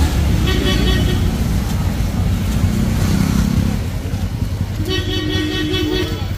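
Street traffic of motor scooters and cars with horns honking: a short honk about half a second in and a longer, steady one near the end, over a constant low engine rumble.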